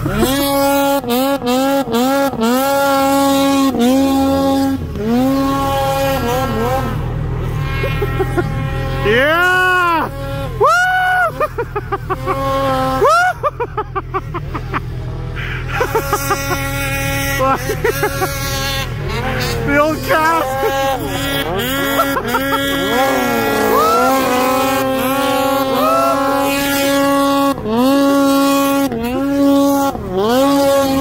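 Snowmobile engines revving, their pitch rising and falling again and again as the riders blip the throttle through deep snow. Near the middle several sleds rev at once, their pitches crossing, over a steady low rumble.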